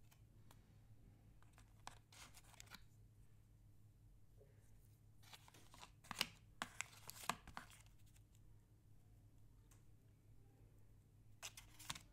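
Paper packaging insert being handled and pulled out of a clear plastic tray, in short bursts of rustling: once about two seconds in, a louder cluster around six to seven seconds, and again near the end, over a quiet room.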